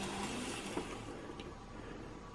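Faint hiss of an AZL Z-scale GP7 locomotive running on the track, fading out about a second in as the throttle is turned down and it rolls to a stop.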